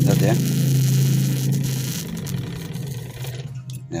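Angle grinder armature spinning in a loudspeaker magnet's field on a low-voltage supply, a steady low buzz that fades out about two to three seconds in as the armature is drawn away from the magnet. This is a spin test of the armature's windings.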